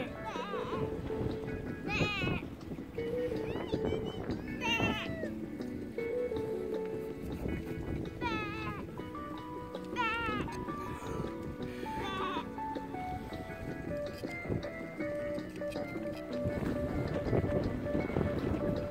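Sheep bleating about five times, each call wavering in pitch, over music playing steadily in the background.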